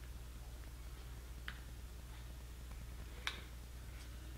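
Two faint clicks about two seconds apart from an HDMI switch changing input on a remote command, over a low steady hum.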